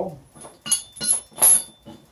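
Three sharp metallic clinks of steel striking a railroad-rail anvil as red-hot steel is worked on it, the last the loudest.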